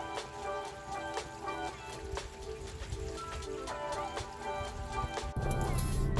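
Background music over rain, with individual raindrops ticking on a wet plastic cover. Shortly before the end, a louder low rumble cuts in.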